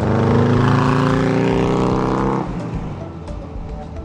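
1966 VW dune buggy's 1835cc air-cooled VW flat-four engine running under power as the buggy drives away, a strong steady engine note. About two and a half seconds in it drops off abruptly, leaving a fainter rumble.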